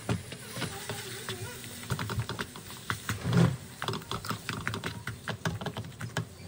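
Plastic spatula stirring and scraping a thick flour-and-butter paste in a nonstick frying pan, with irregular clicks and small knocks against the pan and one heavier thump about three and a half seconds in.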